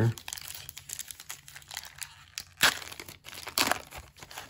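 The wrapper of a pack of trading cards crinkling and tearing as it is opened by hand, with two louder crackling rips, one about two-thirds of the way in and one just before the end.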